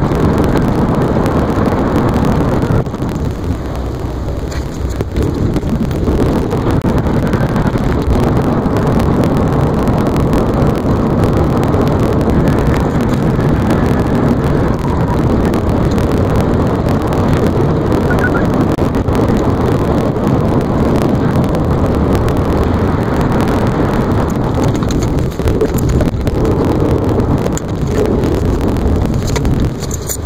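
Car driving on a highway, heard from inside the cabin: steady road and engine noise, easing off briefly about three seconds in.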